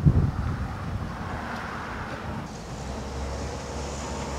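Road traffic passing, a car's tyre noise swelling and fading about two seconds in, over a low wind rumble on the microphone.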